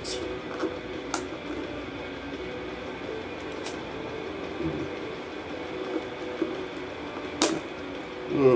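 Handling of a small cardboard box of beard balm as it is pried open, with a few sharp clicks and snaps of the packaging, the loudest shortly before the end.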